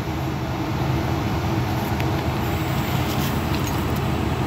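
A steady low mechanical hum with no change in level.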